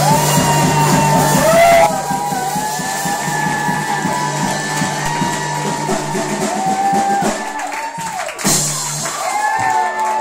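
Live band performing a song: a singer's vocal lines over drums, bass and guitar.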